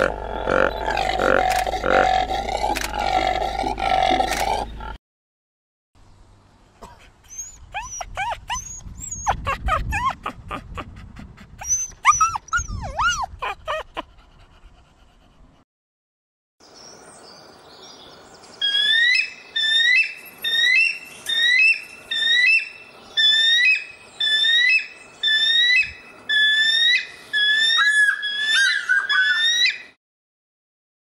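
A Steller's sea eagle calling: a long series of about fifteen high, sharp notes, evenly spaced at about one and a half a second. Before it come other animal calls: a dense stretch over a low hum, then clicks and short chirps.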